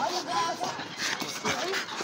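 A muzzled pit bull making short, soft vocal sounds while a person holds it.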